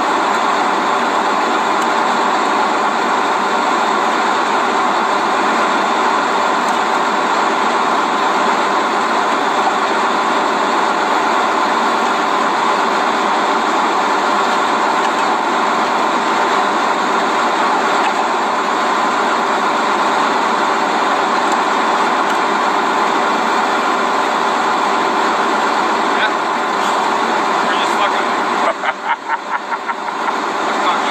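Heavy equipment engine running steadily, a constant even drone, with a few brief flutters near the end.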